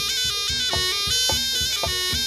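Live Javanese jaranan ensemble music: a melody stepping between held notes over regular drum strokes, about three a second.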